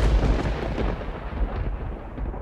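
A loud, deep rumble with a rough hiss above it, swelling and easing unevenly.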